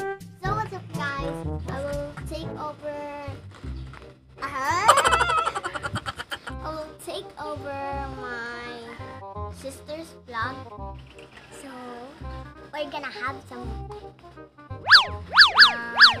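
Background music of the kind used in children's videos, with cartoon sound effects laid over it: a loud wobbling boing about four and a half seconds in, and three quick rising-and-falling whistle swoops near the end.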